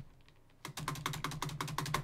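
Computer keyboard typing: a quick run of keystroke clicks starting about half a second in, over a low steady hum.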